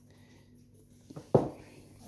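Hands handling a small handheld spectrum analyzer as it powers up: a couple of soft clicks a little after a second in, then one sharper knock, otherwise quiet.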